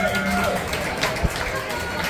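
A man singing with an acoustic guitar in a live duo, a held sung note fading early on over a steady guitar tone. One sharp knock comes a little over a second in.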